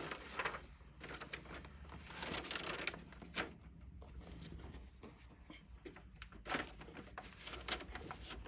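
Faint, scattered rustles and light taps of hands handling paper and a t-shirt.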